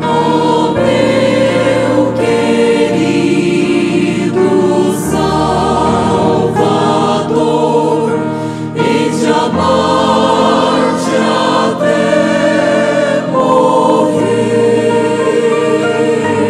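Mixed choir of men's and women's voices singing a gospel hymn in harmony, with a female soloist singing into a microphone among them.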